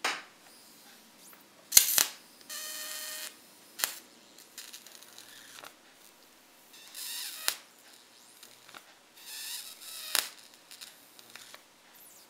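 Small high-voltage arcs, under a centimetre long, from a flyback transformer driven by a two-lamp fluorescent light ballast. Sharp snaps as the arc strikes, and three buzzing sizzles of under a second each, about a quarter, halfway and four-fifths of the way through.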